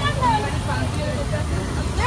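People talking in the background, several voices, over a steady low rumble.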